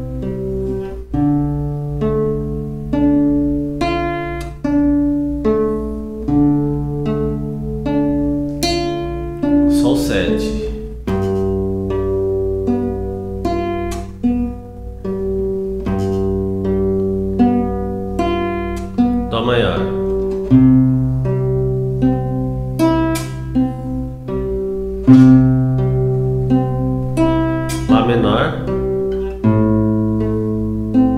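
Nylon-string acoustic guitar fingerpicked slowly in a 6/8 arpeggio pattern: a bass note held under single plucked treble notes, moving through C major, G7 and A minor chords. Brief noises come roughly every nine to ten seconds at the chord changes.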